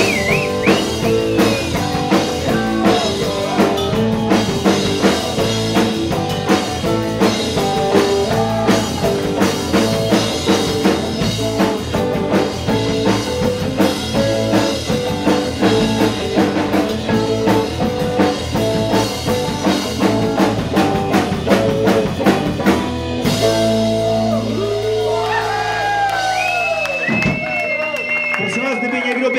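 Live rock band playing an instrumental passage, drum kit keeping a steady beat under guitar. About 23 seconds in the drums stop, leaving a held low note with high sliding tones over it as the number winds down.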